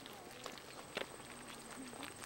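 Footsteps of people walking on a paved road, heard as irregular soft scuffs and clicks, with one sharper knock about a second in.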